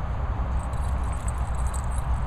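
Wind buffeting the microphone: a steady, fluctuating low rumble. From about half a second in there is also a faint high tinkling.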